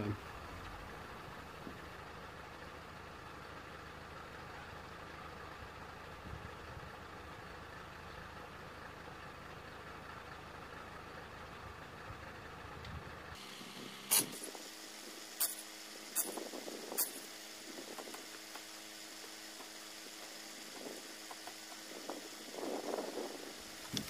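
A faint steady hum, then, about halfway through, four sharp metallic clicks a second or so apart from tools working on the wheel bolts as a wheel is loosened.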